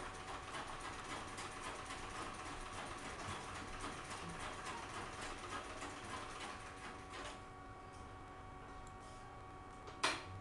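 Sewing machine stitching in a rapid, even run, stopping about seven seconds in.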